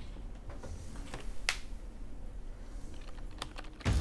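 Typing on a computer keyboard: irregular, scattered key clicks, with one sharper click about a second and a half in.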